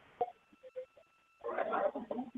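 Telephone-line audio: a click and a faint steady tone on the line, then a man's voice comes in over the phone, thin and narrow, about two-thirds of the way through.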